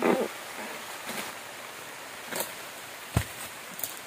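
Light rain falling as a steady hiss, with about five sharp knocks spread through it as a dodos, a chisel blade on a long pole, strikes the trunk and frond bases of an oil palm.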